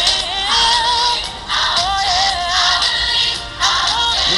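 A recorded song playing, with a singing voice drawing out notes in a wavering vibrato over the backing track.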